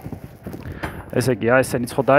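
A man speaking a short phrase about a second in, with a few faint clicks in the quieter first second.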